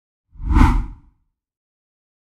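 A single whoosh sound effect with a deep boom underneath. It swells and fades within about a second.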